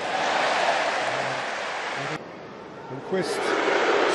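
Large football stadium crowd, loud and steady, swelling as an attack reaches the penalty area, then cut off abruptly about two seconds in. Quieter crowd sound and a commentator's voice follow.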